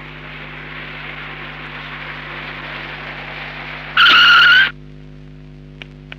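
A car drives up with a steady, slowly building road noise, then its tyres screech sharply for under a second as it brakes to a stop, about four seconds in.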